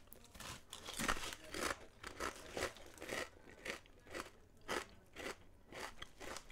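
A person chewing baked potato chips (Lay's Oven Baked), a quiet run of short crisp crunches at about two a second.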